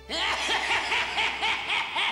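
A man's sinister snickering laugh, a quick run of short laugh pulses that starts suddenly, voicing the villainous master of dreams as he appears.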